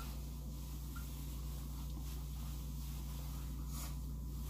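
Faint rubbing of a cloth towel wiping a face, over a steady low hum.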